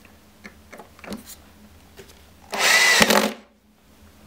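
A drill driver running in one short burst of just under a second, driving a screw to fix a castor plate, about two and a half seconds in. It follows a few light clicks of handling.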